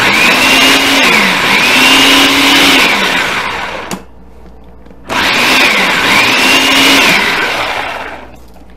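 Electric food processor with its blade attachment chopping a full bowl of green cabbage chunks, run in two long pulses with a pause of about a second between them. The motor's pitch dips and rises as it works through the load.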